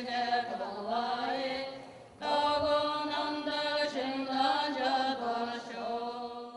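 Buddhist prayer chanting: voices intoning long, drawn-out held notes in a slow recitation, with a short break about two seconds in.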